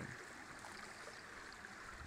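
A small stream running steadily: a faint, even rush of water.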